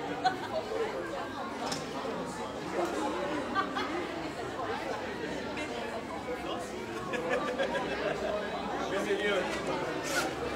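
Many people talking at once in a large hall: the mingled chatter of a congregation, with no single voice standing out.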